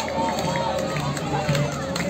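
Stadium crowd at a football match: many voices shouting and chanting, with wavering held sung tones over the hubbub.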